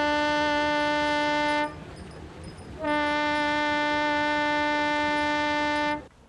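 Ship's horn sounding two long blasts at one steady pitch, the first about two seconds long, the second about three.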